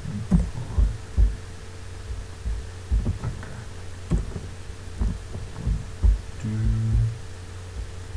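Irregular low thumps and clicks of computer keyboard keys and mouse buttons picked up by a desk microphone, over a steady electrical hum.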